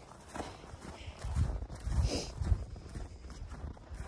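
Footsteps of a person walking over snow-covered, frozen pasture ground, irregular and getting louder about a second in.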